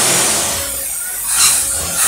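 Chevy 350 small-block V8 running on a Motorcraft 4300 four-barrel carburetor as the throttle is worked by hand, with a loud rush of air hiss that swells about a second and a half in and again at the end. The carburetor is sucking air when the throttle is opened and its accelerator pump is not pumping.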